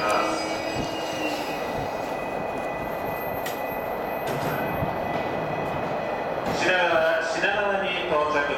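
Tōkaidō Line commuter electric train rolling slowly along the platform and braking to a stop: a steady rumble with thin, high squealing tones from the wheels and brakes. A voice starts near the end.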